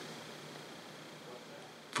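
Quiet room tone: a faint, steady hiss with no distinct event, in a pause between spoken sentences.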